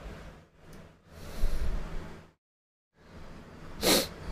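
Quiet pause with a soft breathy noise near the microphone about a second in, then the audio drops to complete silence for under a second before the room noise returns.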